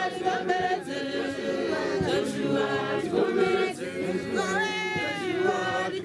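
A congregation singing a hymn a cappella, many voices together in harmony with no instruments.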